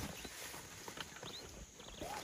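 African elephant digging into a dirt bank at the water's edge with its trunk, giving faint scattered knocks and scrapes of earth and mud.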